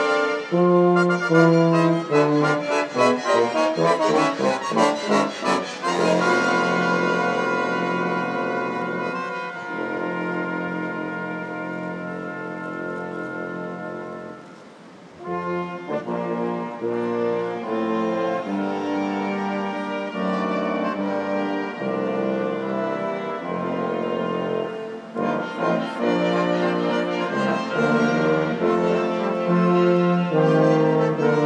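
Brass ensemble playing the national anthem, with quick figures early on, a short break about halfway through, then full sustained chords.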